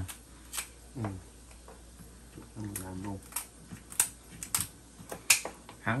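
Kitchen shears snipping through spiny lobster shell: several sharp, separate crunching clicks, the loudest near the end.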